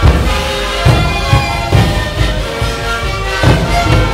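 Sikuri ensemble playing: many siku panpipes sounding a sustained melody in parallel harmony over a steady beat of large bombo bass drums.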